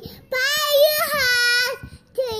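A toddler girl singing one drawn-out phrase of a song in a high voice, its pitch held fairly level with a slight waver, starting just after the beginning and breaking off near the end.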